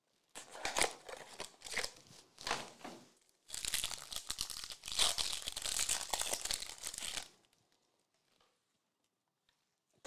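Trading-card box packaging being torn and crinkled open: a few short tearing sounds, then about four seconds of steady crinkling that stops a few seconds before the end.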